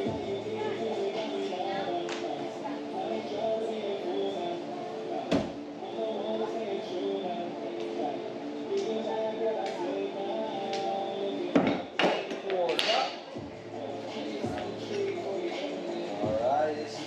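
Background radio music with a steady beat, broken by sharp wooden knocks of thrown hatchets striking the plywood targets: one about five seconds in and a few close together near twelve seconds.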